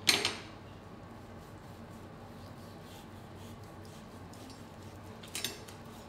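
A chef's knife carving a roasted beef rump on a plastic cutting board: a sharp clatter of metal on the board right at the start, quiet slicing through the meat, and a brief scrape of the blade against the board about five seconds in.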